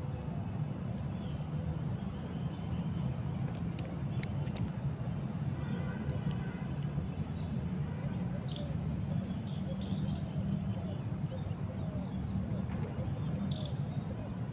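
Handling of a plastic helmet phone mount and its straps, with a few sharp clicks about four seconds in, over a steady low outdoor rumble and faint bird chirps.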